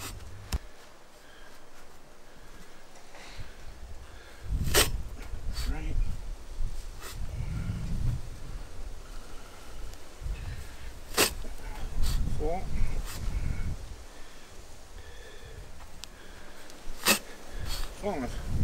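A Pro Plugger turf plugging tool is driven into the lawn underfoot and pulled out again, cutting out plugs of grass. Three sharp clicks come about six seconds apart, with low thuds and rustling between them as the tool is stepped in and lifted.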